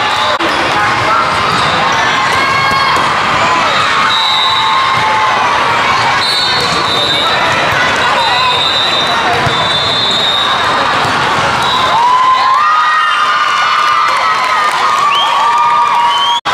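Busy indoor volleyball tournament hall: players and spectators shouting and cheering over a constant crowd din, with volleyballs being struck and bouncing on the courts, all echoing in the large hall.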